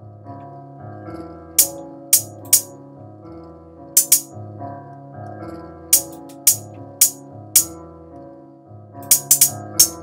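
A beat looping in Akai MPC software: a simple repeating piano melody with programmed hi-hat hits on top, mostly single hats about half a second apart and a quick roll of several hats near the end.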